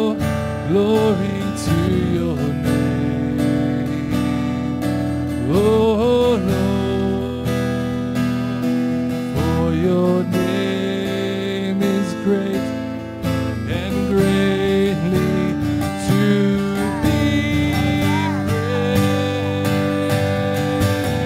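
Live worship music: a strummed acoustic guitar accompanying a man's singing voice, which comes and goes in long held, sliding notes.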